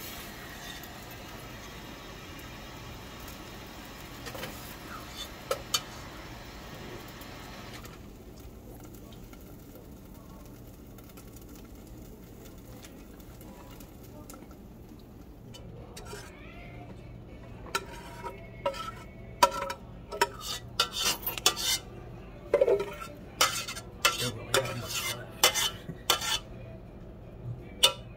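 Metal spoon stirring, scraping and clinking against a stainless steel saucepan while meatballs in tomato sauce are spooned out. The first part is quieter with a faint steady hiss; in the second half come many sharp clinks, several a second.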